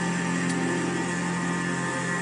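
Car radio playing music with long held tones, over a steady low hum.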